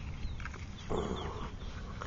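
Quiet outdoor background with a steady low rumble and a few faint short chirps.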